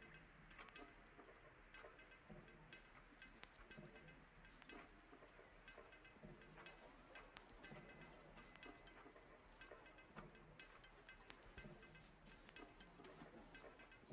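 Quiet playback of a dark experimental hip-hop loop built in FL Studio: bass, pad and keys playing simple chords, with textures and light drum ticks layered in.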